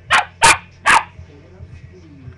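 Small Maltipoo barking three times in quick succession, sharp and loud, during rough play. It stops about a second in.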